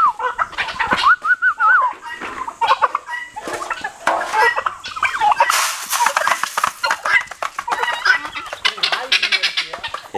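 Chickens and turkeys clucking and calling, with a wavering high call about a second in and a quick run of clicks near the end.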